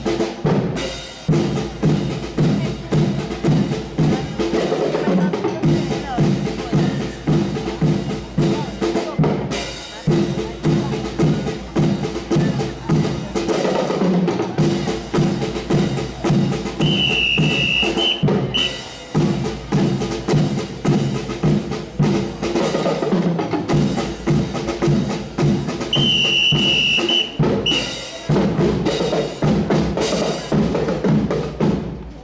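Marching drum section of a fife-and-drum corps playing a steady marching cadence on snare and bass drums, about two beats a second. A trilling signal whistle sounds twice, once a little past the middle and again near the end.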